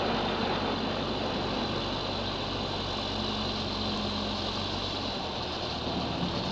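Manitou telehandler's diesel engine running steadily while loading manure, a low even hum with a slightly higher tone joining for a second or so around the middle.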